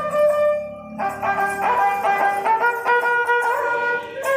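Ravanahatha, a Rajasthani bowed folk fiddle, playing a melody that steps from note to note. The melody briefly drops away about half a second in and resumes after a second.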